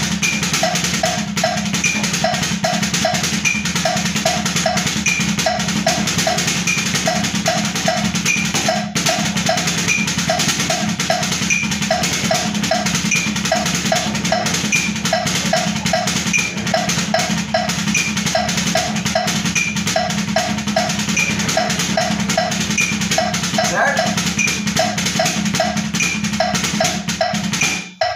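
Drumsticks playing a fast, continuous stream of strokes on a practice pad set on a snare drum, in the sticking right-left-right-right-left-right-right-left at about 160 bpm. A backing track with a steady repeating beat plays along, and the playing stops at the very end.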